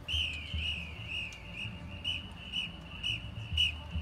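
A high whistle-like tone is held steadily and dips down in pitch and back about twice a second, played as part of a marching band's show.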